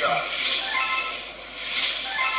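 Sound track of a video-game clip played back over loudspeakers: pitched, voice-like sounds over a constant hiss.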